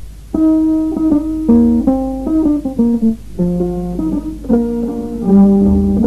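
Instrumental West African music begins abruptly about a third of a second in, after a short stretch of hiss. A plucked string instrument plays a melody of quick, separate notes, and lower notes join in near the end.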